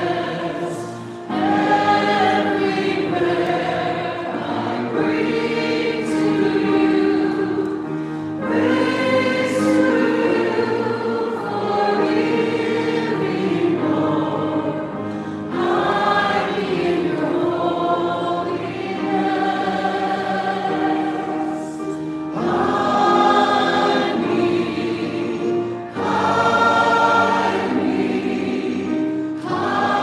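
Group of voices singing a hymn over held accompaniment notes, in phrases that pause briefly every few seconds.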